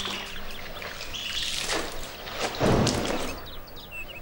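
Clothes being washed by hand in a large metal basin: water sloshing and splashing as the cloth is worked, with a heavier splash a little before three seconds in. Birds chirp in the background.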